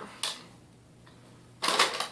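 Makeup items being handled and set down on a hard surface: one brief click just after the start, then a longer clatter near the end.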